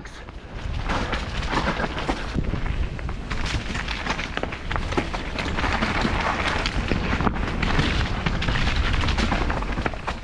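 Mountain bike descending a rough, rocky forest trail at speed: tyres rolling and crunching over stones and roots, with a constant run of small knocks and rattles from the bike. Wind buffets the camera microphone throughout.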